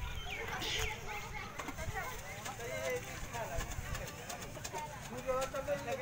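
Background voices of people talking at a distance, with a few short, high, falling bird chirps in the first second.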